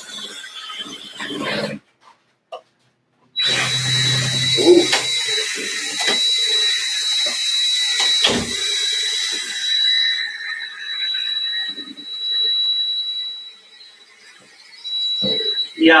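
Cordless drill driving a paddle mixer in a plastic bucket, stirring a batch of epoxy resin. The motor runs with a steady high whine. The sound cuts out for about a second and a half near the start.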